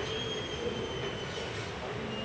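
A thin, high-pitched whine held for about a second and a half, over a steady murmur of hall ambience.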